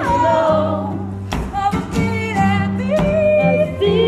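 Live music: a woman singing a wavering, wordless melody over an amplified acoustic guitar, with a steady low bass line and a regular percussive beat.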